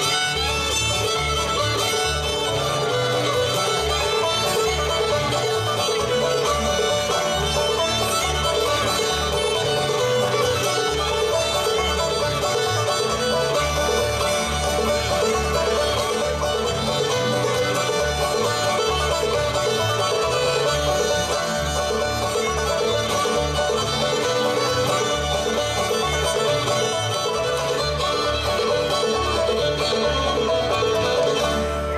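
A bluegrass band playing a lively tune with fiddle, banjo, guitar and upright bass, the bass keeping a steady alternating beat, mixed with the tapping of a dancer's hard-soled boots flatfooting on a wooden dance board.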